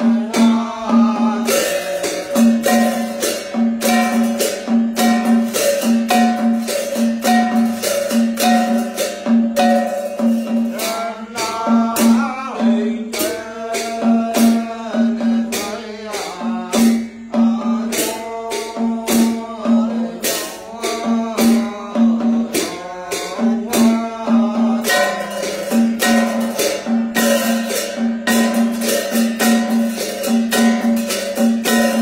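Tày ritual chant: a male voice chanting over a plucked string instrument that repeats one low note in a steady rhythm, with a shaken rattle clicking throughout. The voice comes in mostly in the middle part.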